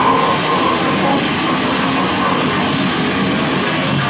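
Loud live rock band playing, drums and distorted electric guitars heard as a dense, steady wall of noise with no clear notes picked out.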